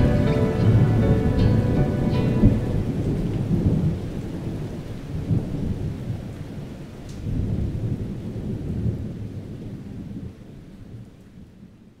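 Thunderstorm sound effect: rain with low rolling thunder, fading out to silence at the end. The last held notes of the music die away over the first few seconds.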